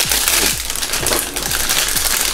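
Foil blind-bag packets being torn open and crumpled by hand, a dense, loud crinkling, with background electronic music and a steady beat underneath.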